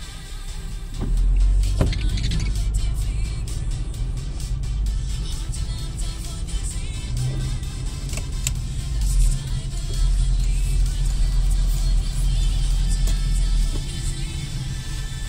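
Car cabin noise while driving slowly on a wet road: a steady low rumble of engine and tyres, swelling about a second in, with music playing in the background.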